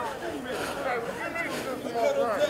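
Indistinct chatter of several voices, with no clear words.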